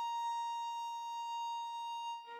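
Violin holding one long high note, steady and slowly fading, as part of a slow, calm melody.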